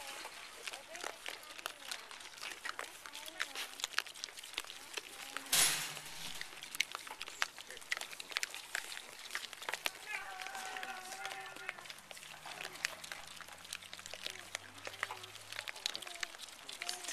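Small pigs rooting in the dirt close to the fence, with many short clicks and scuffs, a few faint animal or voice sounds, and one brief loud rush of noise about five and a half seconds in.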